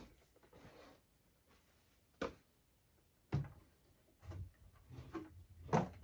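A quiet room with a few isolated knocks and clicks as objects are handled: a sharp one about two seconds in, another just after three seconds, and softer scattered handling sounds near the end.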